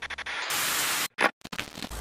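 Television-static and glitch sound effect: a hiss that cuts in and out in choppy stretches, stuttering at first, with a brief louder crackle just past a second in.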